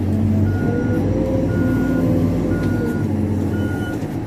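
Backup alarm of a CAT backhoe loader beeping four times, about once a second, as the machine reverses, over its diesel engine running steadily, heard from inside the cab.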